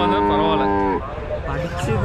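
A cow mooing: one long, steady moo that cuts off about a second in.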